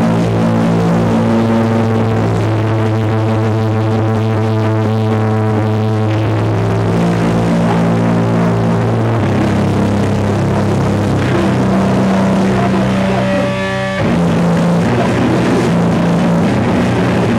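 Live powerviolence band playing loud, distorted electric guitar in long held chords that change every few seconds. Near the end the sound thins for a moment, then the full band comes back in.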